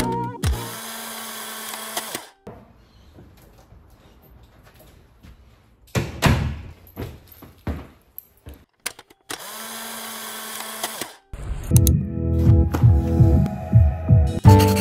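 Two short stretches of steady whirring noise with a low hum, separated by a quiet gap and a few knocks and clicks, then music with a steady beat comes in near the end.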